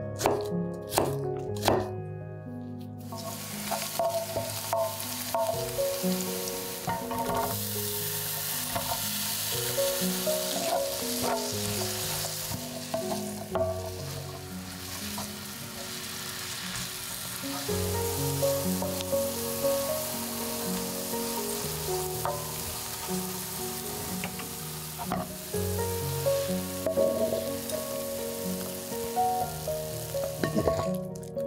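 A few knife strokes through red onion on a wooden cutting board, then, from about three seconds in, sliced red onion sizzling steadily as it fries in a frying pan, stirred with a wooden spatula. Background music plays throughout.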